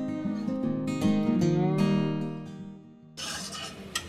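Background music of plucked acoustic guitar notes, cutting off suddenly about three seconds in. Faint scraping of a spatula stirring in the pan follows.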